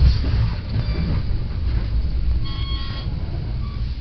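Steady low rumble of a moving Metra commuter train, heard from inside the passenger car, with a brief high-pitched squeal about two and a half seconds in.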